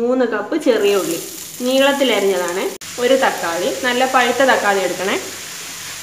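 Sliced shallots dropped into hot oil in a frying pan: a sizzle starts suddenly about half a second in and keeps on, with a voice talking over it.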